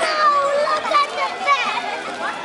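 Children shouting and calling out while playing, many high voices overlapping, with adult voices mixed in.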